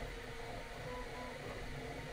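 Bambu Lab X1 Carbon 3D printer running while printing: a faint, steady whir of fans, with thin stepper-motor tones coming and going as the toolhead moves.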